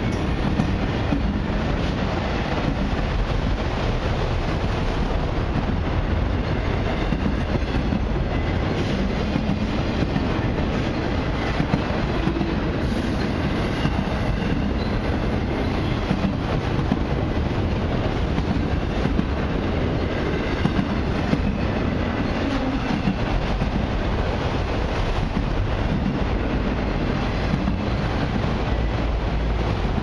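Freight train of autorack cars rolling past at close range: a steady rumble of steel wheels on rail, with scattered clicks of wheels passing over rail joints.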